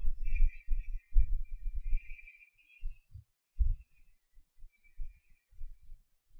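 Faint hiss of a hot air rework station blowing on a circuit board, with irregular low thumps that are loudest in the first two seconds and sparser after.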